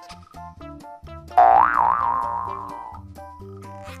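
Children's background music of short repeated notes, with a loud cartoon 'boing' sound effect about a second and a half in whose pitch wobbles up and down as it fades over about a second and a half.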